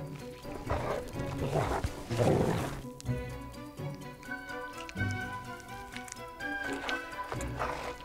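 Background music with steady held notes, over which an Ethiopian wolf digs and snuffles at a rodent burrow in several short noisy bursts, the longest about two seconds in.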